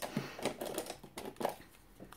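A sheet of white cardstock being picked up off a self-healing cutting mat and handled: a run of light clicks and paper rustles, with a sharper click about a second and a half in.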